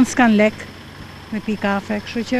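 A woman's voice talking in an interview, broken by a short pause about half a second in where only a steady low background noise remains.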